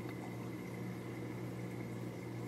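Hang-on-back aquarium filter running: a steady trickle of water from its outflow into the tank, over a low, steady hum.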